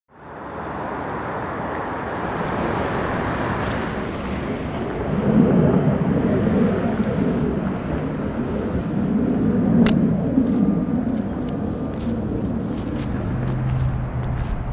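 Outdoor city ambience of steady traffic rumble, which swells louder and deeper for several seconds in the middle as vehicles pass. A single sharp click comes about ten seconds in.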